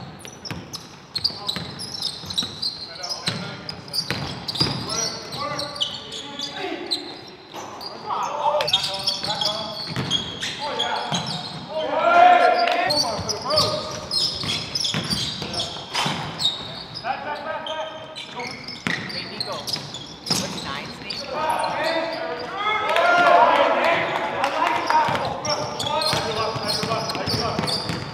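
A basketball bouncing on a hardwood gym floor in irregular sharp knocks, under players' voices calling out across the gym.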